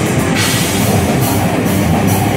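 Live metal band playing loud, with a drum kit and guitars.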